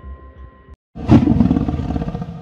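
Background music with a pulsing low beat stops abruptly just before a second in; after a short gap, a loud lion roar sound effect starts suddenly and fades away slowly.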